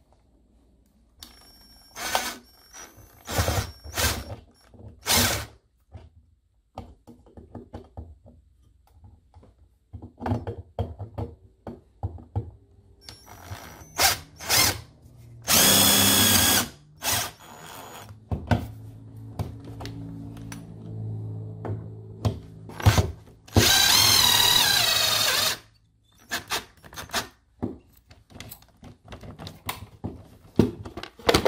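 Cordless drill with a driver bit running screws into a metal electrical box cover plate. A few short bursts come in the first few seconds, then two longer runs of about one and a half and two seconds. Clicks and knocks from handling the tool and the plate fall in between.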